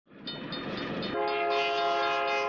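Train sound effect: a train's rumble fades in, then about a second in a train horn sounds a steady multi-note chord and holds it.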